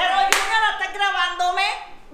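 A woman's high-pitched, excited vocalising with no clear words, stopping just before the end. A single sharp hand clap comes about a third of a second in.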